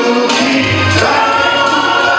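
Male vocal group singing in harmony into microphones over musical accompaniment, with one long held note through the second half.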